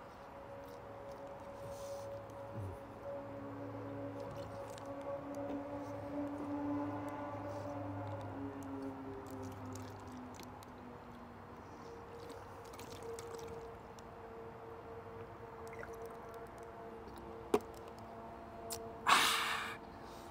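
Aircraft passing overhead: a hum with several tones that slide slowly lower, growing louder to a peak about seven seconds in and then fading. A single sharp click comes near the end.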